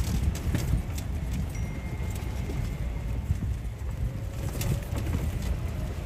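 Wind buffeting the microphone as an uneven low rumble, with scattered light clicks and a faint thin bird call in the middle.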